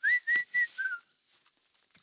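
A man whistling a short four-note phrase in the first second: three high notes, then a lower one that falls away.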